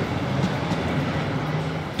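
A city tram passing along a street with traffic: a steady running noise of wheels on rails and motor.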